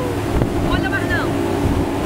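Motorboat running fast through rough river water: a steady engine drone under rushing water and heavy wind buffeting the microphone, with a brief shout of voices about a second in.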